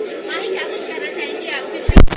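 Overlapping chatter of many voices in a crowded room, with no one voice leading. Near the end comes a single loud, sudden thump, louder than the voices.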